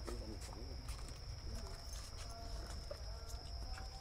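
Faint, distant voices of people talking, with a thin steady high-pitched whine underneath and a few light scattered clicks.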